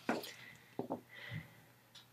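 Faint handling of a paperback picture book as it is swung round and opened, with a few soft, brief sounds.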